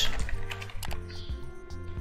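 Computer keyboard keys clicking in a quick run as a word is typed, over soft background music.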